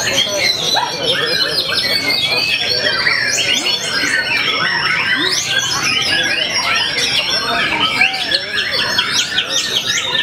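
Several caged white-rumped shamas (murai batu) singing at once: a dense, continuous tangle of loud overlapping whistles, trills and quick chirps, with people's voices underneath.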